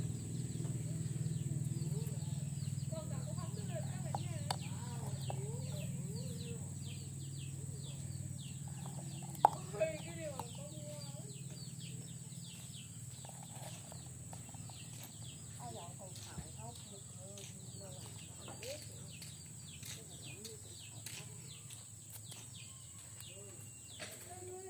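Outdoor birdlife: chickens clucking and many short, high chirps repeating throughout, over a low steady hum that slowly fades. Two sharp clicks about nine and a half seconds in stand out as the loudest sounds.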